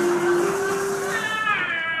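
Contemporary opera music from a live chamber ensemble: a held mid-pitched note that steps up once, under a hissing high wash, then a high sliding tone that rises about a second in and slowly falls.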